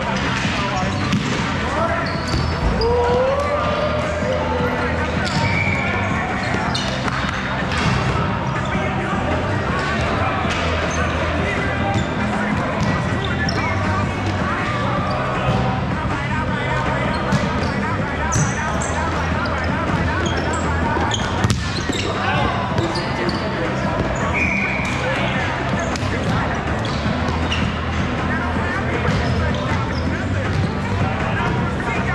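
Busy large sports hall during a volleyball game: players calling out and talking, with frequent sharp smacks of the volleyball being hit and bouncing on the court, over a steady low hum.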